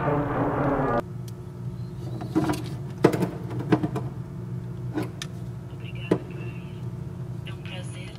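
Brass music that cuts off abruptly about a second in, followed by a steady low hum with several sharp, separate clicks and knocks.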